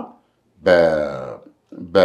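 A man's voice: one drawn-out vocal sound, falling in pitch, between pauses in his talk. Speech resumes near the end.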